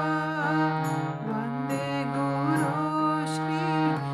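Harmonium playing a slow melody in stepped notes over a low held note, its reeds sounding steadily as the bellows are pumped.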